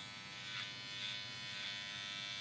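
Electric horse clippers running with a steady buzzing hum as they clip the hair on a horse's face.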